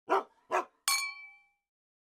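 Two short dog-like barks in quick succession, then a single bright metallic ding whose ringing fades out over about half a second.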